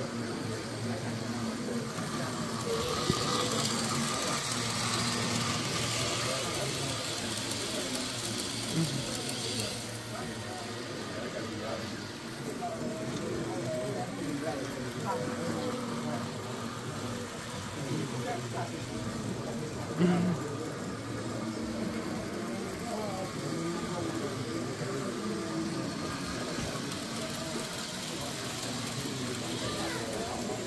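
Indistinct chatter of people in a large hall over the running of model trains on the layouts. A steady hiss sets in about three seconds in and lasts about seven seconds, and there is one short knock about twenty seconds in.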